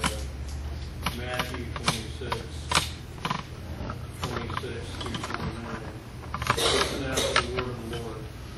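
Scattered small clicks and knocks, more of them close together near the end, with faint murmuring voices and a steady low hum.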